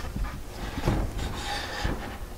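Wooden easel tray being swung up on the frame, wood rubbing against wood with a couple of light knocks.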